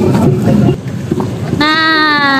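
A single brassy horn note, held for about a second near the end, over the hubbub of a street crowd.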